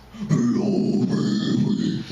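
A man's low, harsh extreme-metal vocal growl into a handheld microphone, starting after a brief pause and held for about a second and a half.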